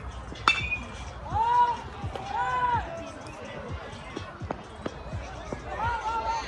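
A metal baseball bat strikes the ball with a sharp, ringing ping about half a second in. Spectators follow it with loud shouts, and shout again near the end.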